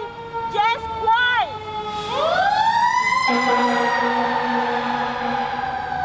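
A passing emergency-vehicle siren: a held tone with many overtones that climbs steeply about two seconds in, then slowly falls and keeps sounding, loud enough to sit over the rally speaker's voice.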